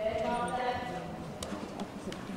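Indistinct voices of children and adults in a large indoor riding arena, a high child's voice loudest in the first second, with two sharp knocks in the second half.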